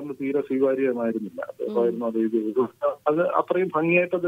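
Speech only: a person talking steadily, with short pauses between phrases.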